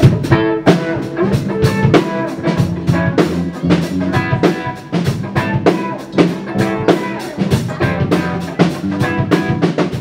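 Live rock band playing a song: a drum kit keeping a steady beat with electric and bass guitars, starting straight after a count-in.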